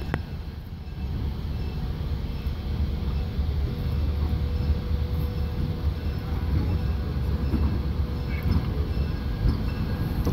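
A consist of three EMD diesel-electric locomotives, GP38-2 #5000 leading, rolling slowly toward and up to the listener: a steady low diesel rumble that grows louder as they approach, with a faint steady whine through the middle.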